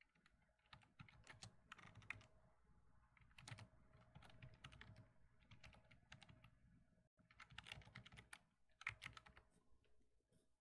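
Faint typing on a computer keyboard: irregular keystroke clicks coming in about three short bursts.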